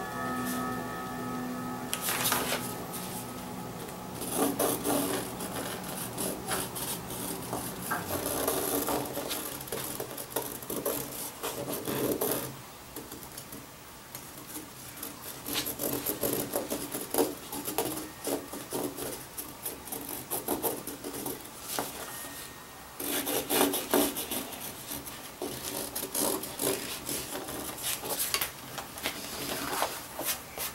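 A pencil scratching on leather as it traces around a cardboard pattern, in bursts of short strokes with brief pauses. It is pressed hard because a pencil line barely shows on leather.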